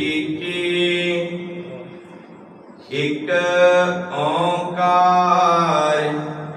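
A man's voice reciting Gurbani in the slow, sung intonation of a Sikh Hukamnama reading, with long held notes. It pauses about two seconds in and resumes about a second later.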